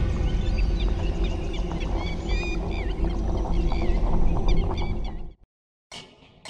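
Logo-intro sound effect: a loud, low, steady background carries on from an opening boom, with small birds chirping over it in short, curling calls. It all cuts off abruptly about five and a half seconds in.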